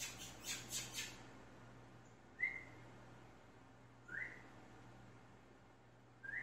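A small bird chirping faintly three times, short rising chirps about two seconds apart. A few quick rustling bursts come in the first second.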